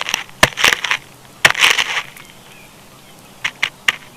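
A bird close to the microphone but out of the picture, making irregular sharp taps and scratchy rustling: two busy clusters in the first two seconds, then a few more taps near the end. Faint small bird chirps sound in the background.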